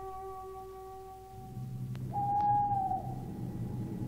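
A held musical chord that stops about two seconds in, then a low rumble and one long, clear hoot, an owl sound effect marking the move to a churchyard at night.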